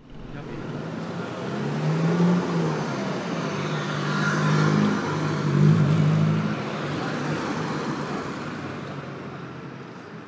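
Town street traffic with a motor vehicle passing: engine and road noise fade in, swell to their loudest in the middle and die away.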